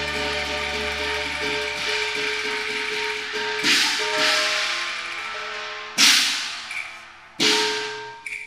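Cantonese opera band accompaniment: sustained bowed-string and held notes, then three loud percussion crashes, typical of the opera's cymbals, at about three and a half, six and seven and a half seconds in, each dying away.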